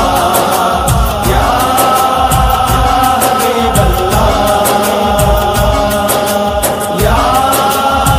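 Interlude of an Urdu naat: wordless held vocal tones over a steady beat, sliding up into a new held note about a second in and again near the end.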